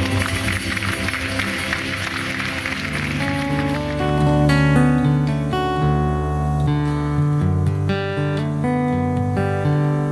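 Solo acoustic guitar played fingerstyle: rapid strumming over a held low note for the first few seconds, then separate plucked melody notes over a moving bass line from about three seconds in.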